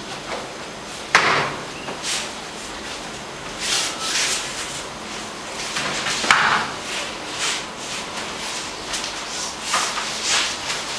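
Cotton jiu-jitsu gis rubbing and bodies thumping onto a floor mat during a mount-escape roll: a sharp thud about a second in, rustling scuffles, and the loudest thud about six seconds in as the pair roll over.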